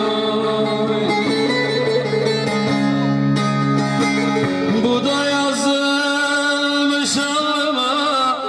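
Live Turkish folk music played through a PA: an arranger keyboard holding long low chords under a moving melody with a plucked-string sound, an instrumental passage of the song with no words.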